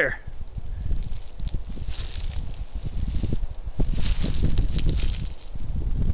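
Footsteps crunching and rustling through dry leaf litter and fallen pine needles under brush, over a low rumble on the microphone; the crackling is thickest about two seconds in and again from about four seconds.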